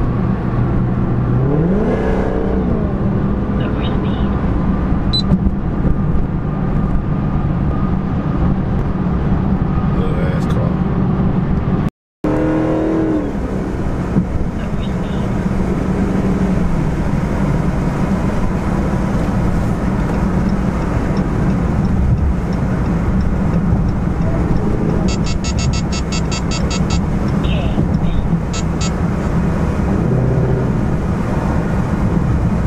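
Cabin sound of a widebody Dodge Charger SRT Hellcat cruising on a freeway: its supercharged 6.2-litre HEMI V8 drones steadily under road and tyre noise. The engine pitch climbs once about two seconds in and falls back about halfway through. A quick run of light ticks comes near the end.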